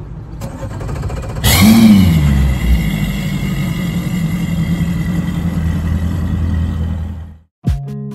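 Mercury Pro XS outboard motor firing up about a second and a half in: a sudden loud start whose pitch rises briefly, drops and settles into a steady idle over a low background rumble. Near the end it cuts off and guitar music begins.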